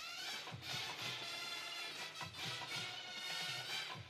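Drum and bugle corps music played back from a recording of a field show: brass horns holding full chords over drums.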